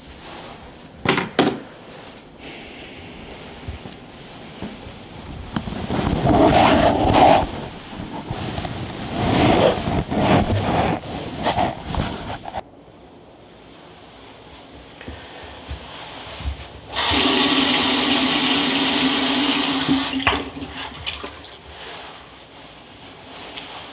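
Water sounds: two sharp knocks about a second in, then uneven surges of running, splashing water, and near the end a loud steady rush of water lasting about three seconds that stops abruptly.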